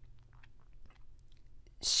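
Near silence in a pause between spoken words: faint scattered mouth clicks over a low steady room hum.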